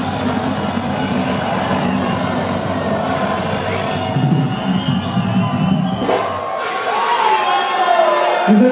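A live band finishing a song over a cheering concert crowd; the band stops about six seconds in, and the cheering and shouting carry on.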